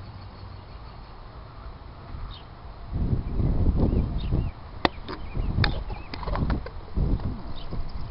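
Outdoor ambience: fairly quiet at first, then irregular low rumbling and dull thumps from about three seconds in, with a few sharp clicks and faint bird chirps.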